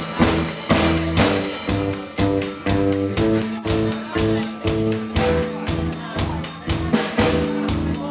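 A band playing live: an instrumental passage with a steady, quick beat under a repeating riff of short pitched notes.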